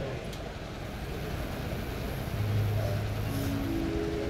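Low rumbling background noise at an open-air gathering, with a steady low hum coming in past the halfway point and a few higher held tones near the end.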